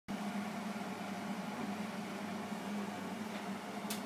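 A steady machine hum with an even hiss throughout, and a single short click just before the end.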